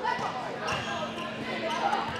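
Basketball dribbling on a hardwood gym floor, with a few scattered bounces under background chatter from the players.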